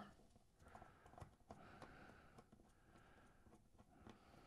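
Near silence, with a few faint clicks from a nut driver turning a small aluminum nut off a stud, mostly in the first half.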